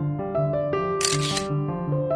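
Background keyboard music with a camera-shutter sound effect about a second in: one short burst of hiss lasting about half a second.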